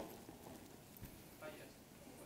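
Near silence: lecture-hall room tone, with a soft knock about a second in and a faint snatch of voice about one and a half seconds in.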